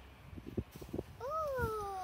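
One high, drawn-out call that rises and then falls in pitch, starting a little past halfway, after a few soft knocks.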